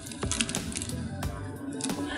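Rapid light clicks and crinkles of snack wrappers being handled, over background music.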